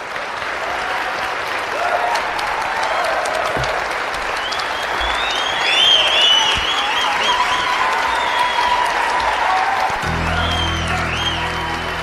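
Audience applauding, with music over it; deeper sustained music notes come in about ten seconds in.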